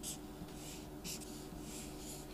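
Felt-tip marker scratching on paper in several short strokes as a box is drawn around a written answer.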